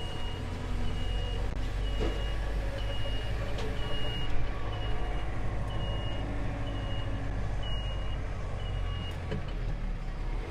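John Deere compact tractor engine running as the tractor reverses down trailer ramps, its backup alarm beeping about once a second until the beeps stop near the end. A couple of faint knocks come through.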